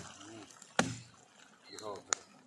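A single sharp knock against the steel drum of a makeshift liquor still, about a second in, with a short low ring after it. Faint voices come just before and just after it.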